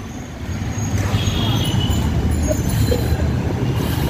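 Wind noise on the microphone of a camera carried on a moving bicycle, a steady low rush that grows louder over the first second, with street traffic faintly behind it.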